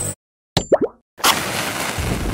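Logo-animation sound effect: a click and a few quick sliding tones just after half a second in, then, after a short silence, a steady hiss that begins about a second and a quarter in.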